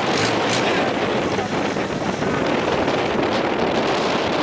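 Steady wind buffeting the microphone at sea, with a boat engine running low underneath.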